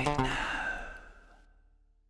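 The song's final moment: a breathy, sigh-like last sung note over the closing chord, both dying away over about a second and a half.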